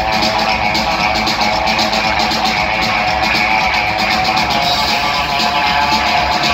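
Live rockabilly played by a trio of upright bass, electric guitar and drums, recorded loud and steady from the audience, with a fast clicking rhythm running through it.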